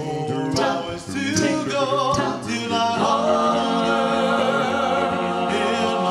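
A five-voice a cappella doo-wop group, men and a woman, singing in close harmony into microphones with no instruments. Short sung syllables with moving pitches give way about three seconds in to a long held chord.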